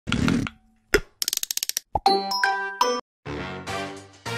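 Animated logo sting made of cartoon sound effects: a short thud, a sharp pop, a quick run of about nine ticks, a rising sweep and bright chime notes. About three seconds in, children's theme music starts.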